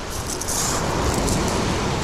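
A fixed-spool reel being wound in against a hooked fish, over a steady rush of surf and wind on the microphone, with a light high rattle during the first second and a half.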